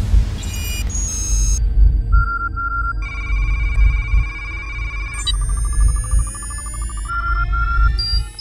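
Electronic logo-sting sound design: a deep low rumble throughout, with short repeated electronic beeps about two seconds in and again near the end. Many rising tones sweep upward from about five seconds in.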